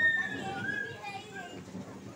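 Voices calling out: a loud high call that slides down in pitch opens, followed by shorter chattering calls.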